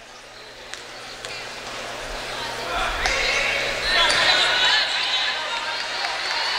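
A basketball bounced a couple of times on a hardwood gym floor at the free-throw line, followed from about three seconds in by louder voices and gym noise as play resumes.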